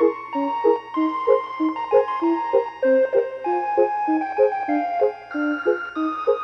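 Circus organ music: a bouncy, evenly paced accompaniment of short low notes, about three a second, under held melody notes higher up.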